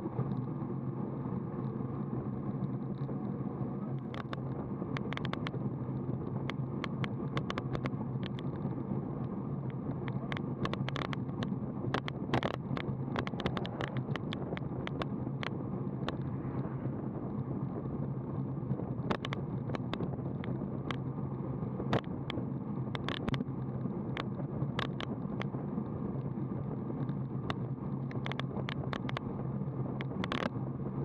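Steady wind and rolling-road noise on a road bike's camera microphone at about 32 km/h, with a constant low hum. Irregular sharp clicks and ticks run through it from about four seconds in.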